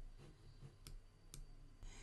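Near silence: quiet room tone with two faint clicks about half a second apart, near the middle.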